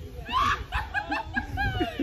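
People laughing: a run of high-pitched snickering giggles in quick, short, falling bursts, over a low rumble of wind on the microphone.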